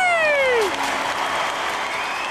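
Applause, with a long high cry sliding down in pitch that dies away about half a second in.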